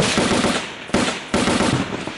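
Bursts of automatic gunfire. A new burst starts about a second in and another shortly after, each one trailing off in echo.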